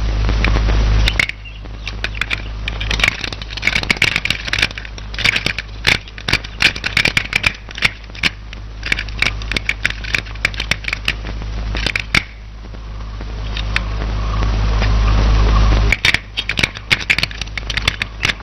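Crackly old film soundtrack: dense, irregular clicks and crackle over a steady low hum, with a hiss that swells for a few seconds and then cuts off suddenly near the end.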